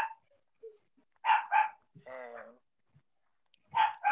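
A dog barking: two quick barks about a second in, then a longer drawn-out bark.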